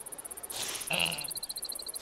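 Jungle ambience of insects trilling in rapid, even pulses. A second, lower trill joins about a second in, together with a short chirping call.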